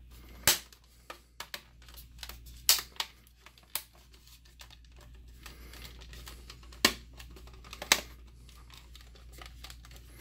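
Plastic cover of a Linksys E3000 router being snapped back onto its base: a series of sharp plastic clicks as the clips latch, loudest about half a second in, near three seconds, and twice near seven and eight seconds, with smaller creaks and ticks between.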